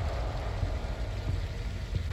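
Low, steady rumble of road traffic, like a vehicle engine idling close by.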